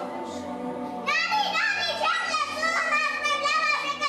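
A young girl's high-pitched voice starts about a second in, its pitch bending and breaking like speech, over background music with long held notes.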